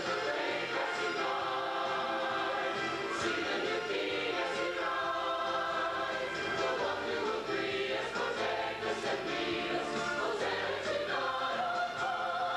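Church choir singing, many voices together in a steady, unbroken passage.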